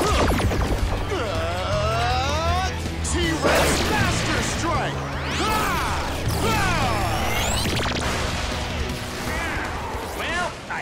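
Action-show score with a steady bass line under layered fight sound effects: repeated sweeping whooshes rising and falling, and crashing impacts of a powered-up sword attack with fiery blasts.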